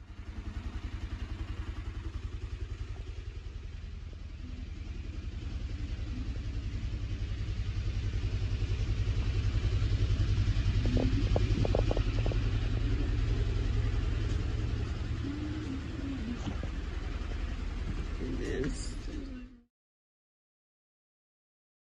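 A steady low mechanical hum with a fast, even pulse and a hiss above it, growing louder towards the middle and cutting off suddenly near the end. Faint voices can be heard in the background around the middle.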